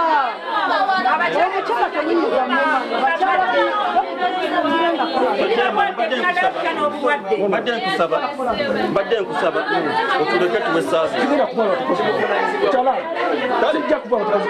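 Several people talking over one another in a heated argument, with a woman's voice among them.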